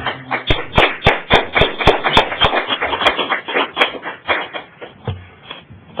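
A small audience applauding, with the separate claps of a few people dense at first and thinning out after about four seconds.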